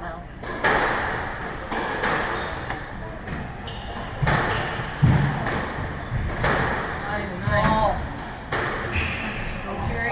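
A squash rally: the ball is struck by rackets and smacks off the court walls in sharp, echoing hits about once a second. A brief voice cuts in near the end.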